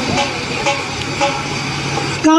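A crowd clapping along in a steady beat, about twice a second, with a low steady tone underneath.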